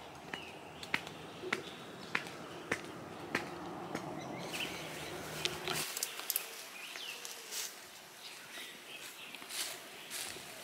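Outdoor ambience with short bird chirps over a steady background hiss, and sharp ticks about every 0.6 s. A low hum underneath cuts off abruptly about six seconds in.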